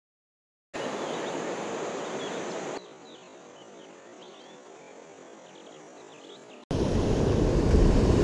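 Cut-together shore sound: about a second of silence, then a steady rush of wind and water, a quieter stretch with faint high chirping ticks, and near the end surf surging over rocks with wind on the microphone, the loudest part.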